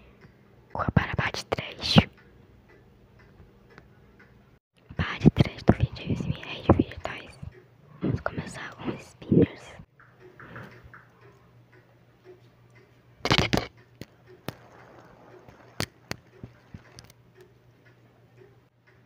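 Close-miked ASMR of fidget toys: soft whispering mixed with the taps, scrapes and crinkles of toys handled right at the microphone, then a few sharp single clicks near the end.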